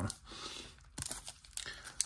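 Waxed paper wrapper of a baseball card wax pack being torn and peeled open by hand. A faint tearing rustle through the first second is followed by a few crinkles.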